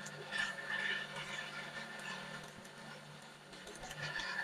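Faint rustling of pattern paper being folded over along its edge by hand, mostly in the first second, over a low steady hum.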